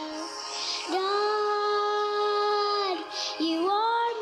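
A young girl singing into a microphone, holding a long note from about a second in until nearly three seconds, then gliding upward into the next note.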